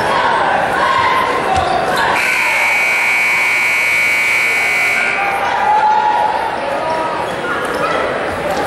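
Gym scoreboard buzzer sounding one steady, high-pitched horn for about three seconds, starting about two seconds in, over crowd chatter and court noise.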